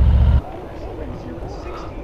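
Harley-Davidson Road Glide's V-twin engine idling with a deep, even rumble, then switched off abruptly less than half a second in.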